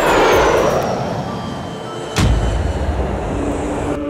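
Jet airliner passing low overhead: a loud engine rush with a high whine that falls in pitch as it goes by. A sudden hit with a low thud about two seconds in.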